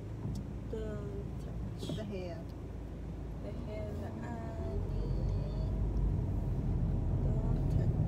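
Car driving slowly, a steady low rumble of engine and road that grows louder in the second half, with faint voice-like sounds in the first few seconds.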